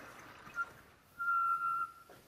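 Chalk squeaking on a blackboard: a short chirp, then a steady high squeal lasting under a second, starting about a second in.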